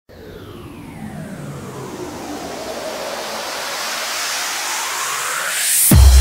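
Electro house intro: a synthesized noise riser that swells steadily louder while its filter sweeps down and then back up to a high hiss, building tension. Right at the end the first heavy four-on-the-floor kick drum drops in.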